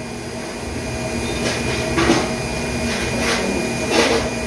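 Plastic spatula scraping lightly on a glass slab, a few soft strokes, as it mixes powder and gel into a cement-like paste, over a steady machine hum.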